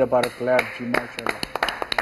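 Two people clapping their hands, a quick, uneven run of claps that starts about a second in, just after a man's voice stops.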